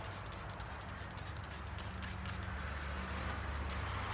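Trigger spray bottle squirting in many short, irregular hissing spurts, over a steady low rumble of wind on the microphone.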